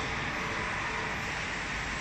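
Steady machinery noise in a factory hall: an even whirring hiss with a faint steady hum, typical of fans or blowers running.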